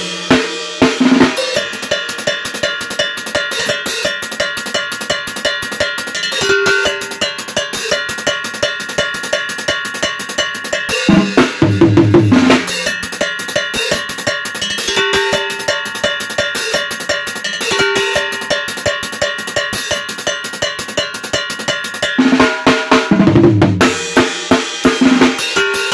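Drum kit with chrome-shelled drums, cymbals and a mounted cowbell, played in a steady driving beat. Louder tom fills that step down in pitch come about halfway through and again near the end.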